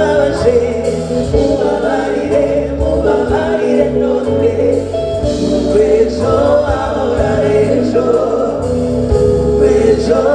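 Live band music: a woman singing lead into a microphone with backing singers holding notes in harmony, over drums, bass and keyboards.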